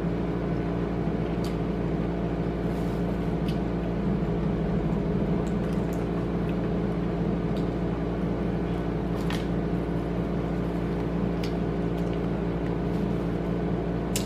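A steady mechanical hum built of several steady low tones, with a few faint clicks scattered through it.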